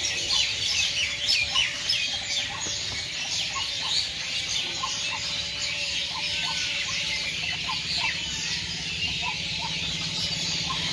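A dense chorus of many small birds chirping and twittering without a break, with scattered short, lower calls among them and a faint steady low hum underneath.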